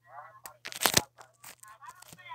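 Phone handling noise: clothing and fingers rubbing and knocking against the microphone, giving several sharp crackles, the loudest about a second in. Short snatches of voice can be heard between them.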